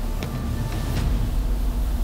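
A low, steady mechanical rumble with faint background music.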